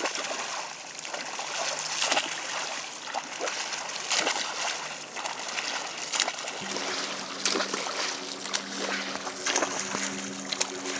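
Water splashing and sloshing as a swimmer's front-crawl strokes break the surface of calm sea. About two-thirds in, a steady low hum of a boat motor starts and runs on under the splashing.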